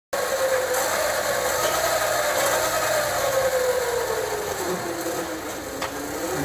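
Small electric pocket bike's 250-watt motor and chain drive whining, its pitch slowly falling as it winds down. A sharp click comes just before the end.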